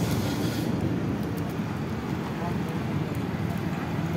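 Indistinct background voices over a steady noisy hum.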